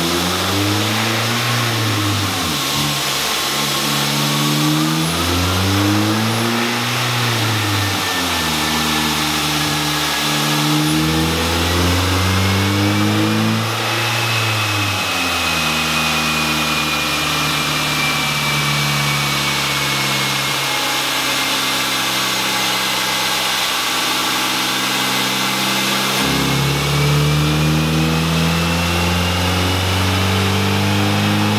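Ford Focus engine running hard on a chassis dyno, its note rising and dropping back several times as it goes up through the gears, with a high whine from the rollers and tyres climbing with speed, easing off in the middle and climbing again near the end. The car is modified with an intake, a balance shaft delete and an EGR delete tune.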